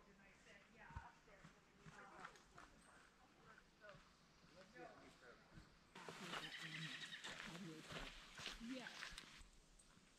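Faint, distant talking among a group of people, close to near silence, with the voices a little louder from about six seconds in until near the end.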